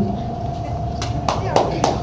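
Stage room noise with a faint steady tone, and four sharp taps in the second second.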